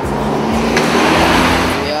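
A car passing close by on the street: engine and tyre noise swelling to a peak around the middle and easing off near the end.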